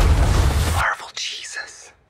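Trailer soundtrack: a loud, deep rumbling mix of score and battle effects that cuts off abruptly just under a second in. A faint, breathy voice follows.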